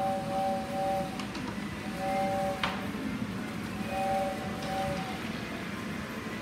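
Simple electronic carnival tune from a push-button miniature carnival display, playing short phrases of paired steady notes with brief gaps between them. A few sharp light clicks sound over it, one near the start and one about two and a half seconds in.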